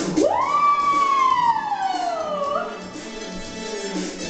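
A woman sings one long, high 'ooh' into a microphone. It leaps up in pitch, then slides slowly down for about two and a half seconds and ends with a small upward flick. A disco backing track with a steady beat plays underneath.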